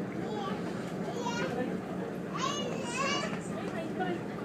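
Several short bursts of high-pitched children's voices, the longest and loudest between about two and three and a half seconds in, over the steady low hum of a passenger ferry's engines.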